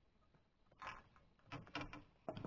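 Near silence, broken by a few brief, faint knocks or rustles in the second half.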